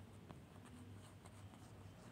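Faint scratching and light ticks of a stylus writing, over a low steady hum.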